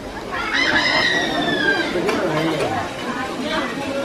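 A rooster crowing once: one long, high call that slides slowly down in pitch, over the chatter of people talking.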